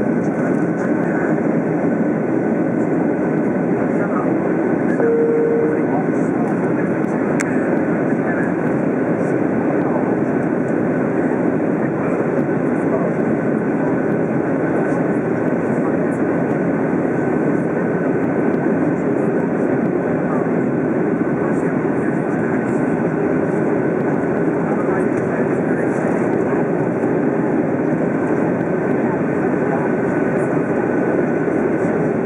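Steady cabin noise of a Boeing 737 descending on approach, heard from a window seat beside the engine: the turbofan and rushing airflow, with a faint steady high whine. A brief tone sounds about five seconds in.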